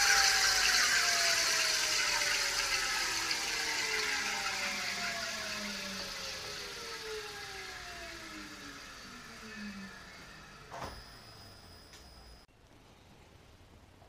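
TM4 electric drive motor and its reduction gearbox spinning down to a stop on a bench rig: several whines glide steadily down in pitch and fade away over about ten seconds. A single click comes near the end, then near silence.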